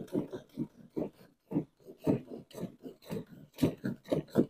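Hand milking a cow: jets of milk squirting into a partly filled bucket in a steady rhythm of about two to three squirts a second.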